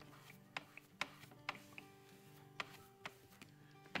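Quiet background music of steady, held chords, with about eight light clicks and taps scattered through it from craft materials being handled on the work table.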